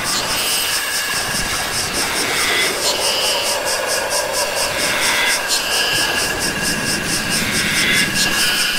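Experimental electronic music: a fast, even run of high ticks, about four or five a second, over a noisy drone with tones that shift in pitch every second or so.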